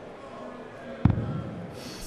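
A steel-tip dart hitting a bristle dartboard once, about a second in, a single sharp hit with a short dull thud after it.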